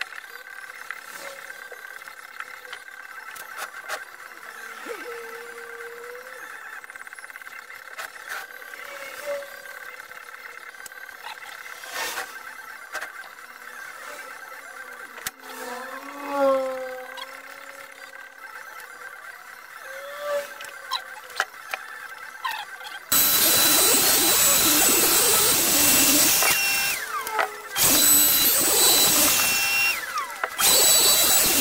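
A few faint short squeaks, then about 23 s in a loud electric machine starts up with a steady rushing noise, cuts out briefly near 28 s and starts again.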